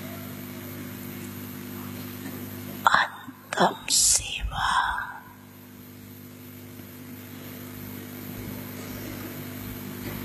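Steady electrical hum from a microphone and speaker system. About three seconds in, it is broken by a brief burst of a woman's voice close to the microphone: two short catches of breath or voice, a hissed breath, and a short syllable, over about two seconds.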